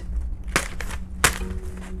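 A pencil is punched through a folded sheet of paper, making two sharp pops about two-thirds of a second apart.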